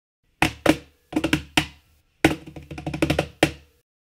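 A short rhythmic phrase of hand-drum hits: about a dozen sharp strokes, each with a deep thud under it, played in three quick groups.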